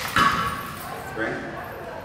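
A man says "good" about a second in, over the murmur of a large tiled room, after a brief loud sharp sound right at the start.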